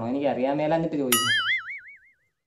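A man speaking briefly, then, just over a second in, a cartoon-style 'boing' sound effect: a twangy tone whose pitch wobbles up and down as it fades away over about a second.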